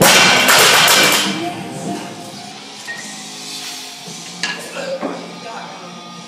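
Loaded barbell with bumper plates dropped from overhead onto a rubber-matted gym floor: one loud crash as it lands, then the plates bouncing and rattling for about a second before dying away.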